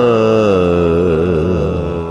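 A male singer holding a long wordless "ah" vowel that slides down in pitch and then wavers up and down in quick Carnatic-style ornaments, slowly getting softer.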